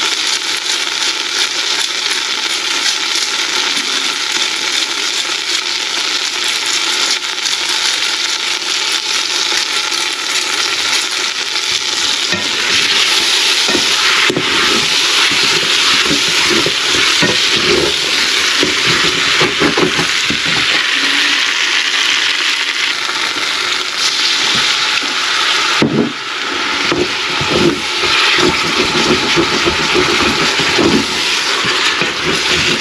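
Diced meat sizzling as it browns in a hot stainless steel pan, stirred with a wooden spoon. The sizzle grows louder about twelve seconds in, with the spoon scraping and stirring through it.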